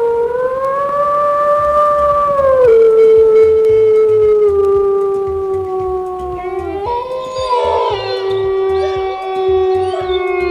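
Wolves howling. One long, steady howl drops a little in pitch about three seconds in and sinks slowly after that. A second, higher howl joins about seven seconds in and overlaps it.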